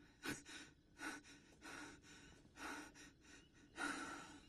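A person breathing heavily and fast close to the microphone: about five noisy breaths in four seconds.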